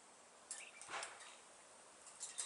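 Near silence with two faint clicks, about half a second and a second in: a thin steel rod knocking against the wire mesh of a folding cage trap as it is fed into the cage.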